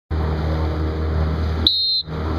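Steady low engine hum of a motorboat under way, with wind and water noise. Near the end, after a click, the other sound drops out and a short, high-pitched electronic beep sounds for about a third of a second.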